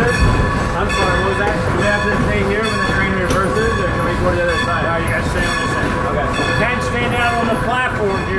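Steam-hauled passenger train rolling along, a steady rumble of wheels on rail heard from the open end platform right beside the locomotive, with people talking over it.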